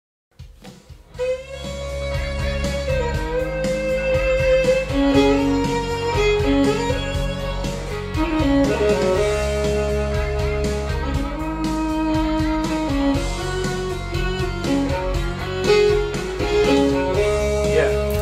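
Studio playback over monitor speakers of a country track with a freshly recorded fiddle overdub: the fiddle plays a melodic part of long held notes with slides, over a steady band accompaniment. The music starts about half a second in.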